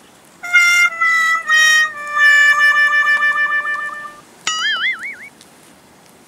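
Comedy sound-effect sting: three short notes stepping down and a long held lower note with a wobble, the 'sad trombone' cue that marks a defeat. About half a second after it ends comes a short wavering boing.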